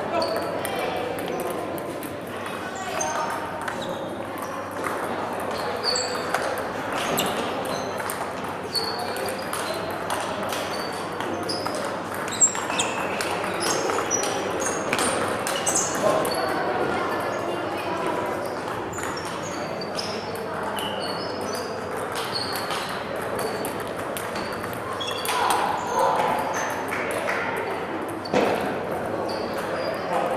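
Table tennis balls clicking and pinging off bats and tables at an irregular rapid pace, from several rallies at once, over a constant murmur of voices.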